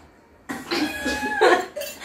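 A person coughing in a short, loud burst that starts about half a second in and lasts about a second and a half.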